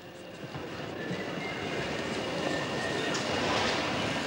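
A dense rumbling clatter fades in and grows steadily louder, with no clear voices in it.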